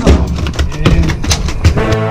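Background music with loud, irregular drum hits and a heavy low end.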